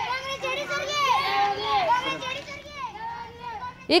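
Several children's voices calling out at once, high-pitched and overlapping.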